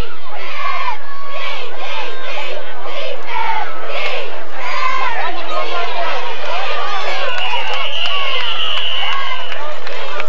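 Football crowd in the stands, many voices talking and shouting over each other. About seven seconds in, a referee's whistle blows one long, high blast of a little over two seconds, as the tackle ends the play.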